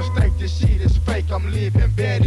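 1990s Memphis rap song played from a cassette-tape rip: a heavy bass line and steady drum beat with vocal lines over it.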